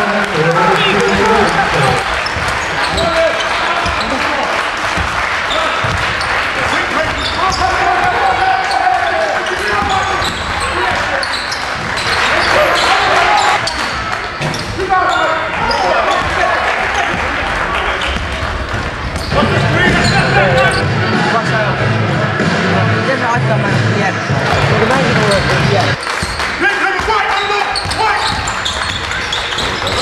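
Live sound of a basketball game: the ball bouncing on a wooden court amid indistinct voices of players and spectators.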